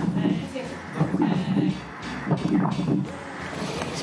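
Doppler heart sounds from an echocardiography ultrasound machine: a pulsing whoosh of blood flow through the heart, about one beat a second. The doctor judges the heart in excellent shape.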